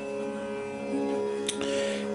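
Quiet background music: a steady held drone, with a single short click about one and a half seconds in.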